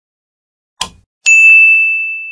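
Subscribe-button animation sound effect: a short click, then about half a second later a single bright bell ding that rings on and fades slowly.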